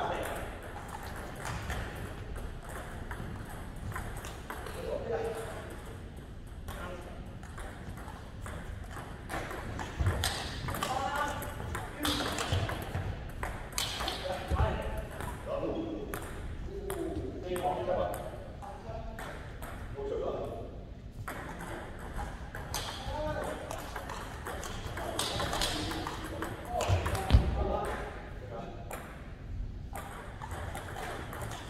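Table tennis balls clicking repeatedly off bats and tables at several tables, under people talking. A louder thump stands out near the end.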